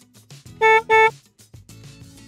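Two short car-horn beeps in quick succession, a toy-car 'beep beep', over light background music.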